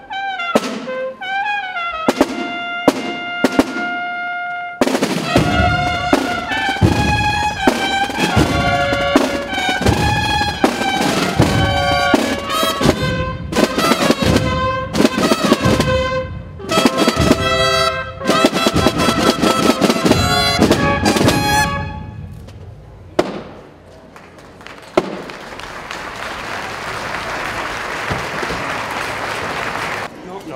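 A brass band plays, trumpets alone at first and then the full band with bass and drums from about five seconds in, punctuated by many sharp cracks. The music stops a little after twenty seconds, and a wash of applause swells over the last five seconds.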